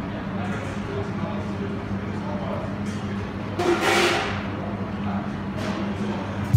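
Dining-room ambience of a busy eatery: indistinct chatter over a steady low hum, with one louder brief noise about three and a half seconds in.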